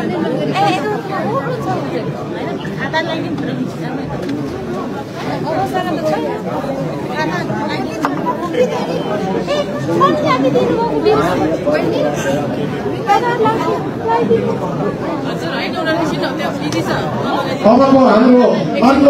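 Many people talking at once in a large hall: steady overlapping chatter with no single voice standing out.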